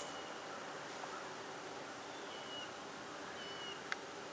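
Quiet lakeside ambience: a faint steady hiss with two short, high bird calls, one a little past two seconds in and one past three, and a small click just before the end.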